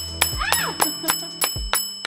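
Rapid string of bell-like ding sound effects, about four a second, each ding ticking up an on-screen tally counter; a woman's voice says "oh" about half a second in.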